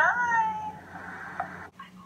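A high, drawn-out, meow-like cry sliding down in pitch, trailing off within the first second and following a run of similar cries. The sound cuts off abruptly near the end, leaving quiet room tone.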